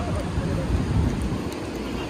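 Wind buffeting the microphone in low, uneven gusts over a steady wash of ocean surf.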